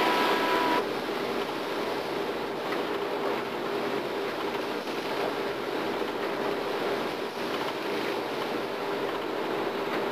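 Steady machinery drone and wind-and-sea noise on the open deck of a tug under tow, with a faint steady hum throughout. A high steady whine cuts off abruptly about a second in.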